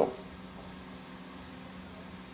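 Faint steady hum with a low tone and light hiss, unchanging throughout.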